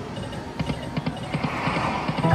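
88 Fortunes video slot machine's reel-spin sound effects: a run of quick, irregular clicks as the reels spin and stop one after another.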